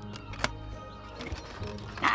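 Quiet background music with one sharp click about half a second in, as the lock of a wooden treasure chest is undone and the lid opened, followed by a few faint ticks.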